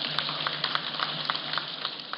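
Paper rustling close to a lectern microphone, as pages of a speech are handled: irregular crackles, a few a second, over a steady low hum.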